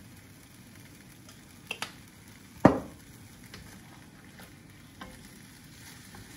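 Chicken and broccoli stir-fry sizzling steadily in a wok, stirred with a wooden spatula. A sharp knock comes about two and a half seconds in, with a few lighter clicks.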